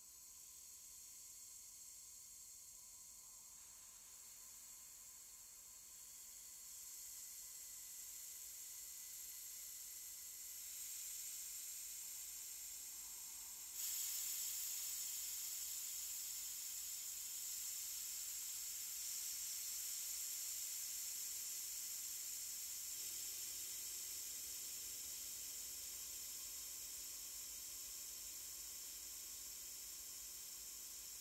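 A cheap tambourine's jingles, picked up by a laptop mic and fed through the Airwindows Galactic2 reverb set to long sustain, build into a bright, high-pitched shimmering wash. It swells in several steps, with the biggest jump about halfway through, then slowly dies away.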